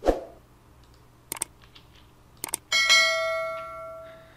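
A knock, then two sharp clicks about a second apart, then a bell-like chime that rings and fades over about a second and a half: the click-and-bell sound effect of a YouTube subscribe-button animation.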